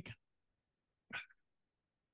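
Near silence broken by one short, clipped burst about a second in: a sneeze almost entirely cut out by the video call's noise suppression.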